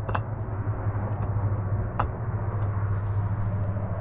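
A steady low rumble with two sharp knocks of stone on stone, about two seconds apart, as stones are laid along the base of a wall.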